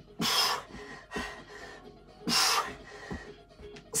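A man breathing out hard twice, about two seconds apart, from the exertion of a floor bridge exercise.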